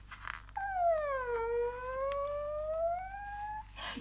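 A creaking-door sound for the door swinging open: one long creak starting about half a second in, dipping in pitch and then rising slowly until it stops shortly before the end.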